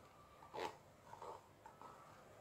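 Near silence with faint handling of plastic paint cups and a wooden craft stick: a soft tap about half a second in, then light rubbing.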